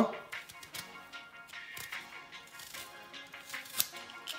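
Quiet background music, with faint scrapes and clicks from a Y-peeler being drawn down a lemon's skin to take off a strip of peel. A sharp click comes near the end.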